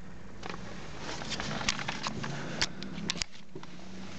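Handling noise inside a car cabin: a few sharp clicks and light knocks, bunched in the second half, over a steady low hum.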